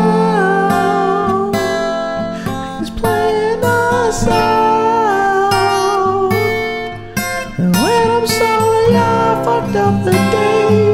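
Guitar playing an instrumental outro: held notes that bend in pitch, with a long upward slide a little before eight seconds in.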